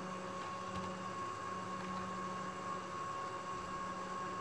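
Steady whir and hum from an air-cooled PC testbed's fans, with a faint steady high tone running through it.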